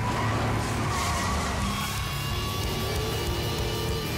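Movie-soundtrack car engine revving hard under music, with tyre squeal; the engine's pitch climbs in the second half.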